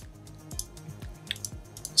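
Quiet background music with steady low notes, with a few faint clicks over it.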